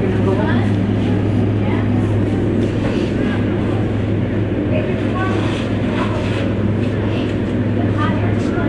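Indoor skydiving vertical wind tunnel running: a loud, steady rush of air from the tunnel's fans with a constant low hum underneath.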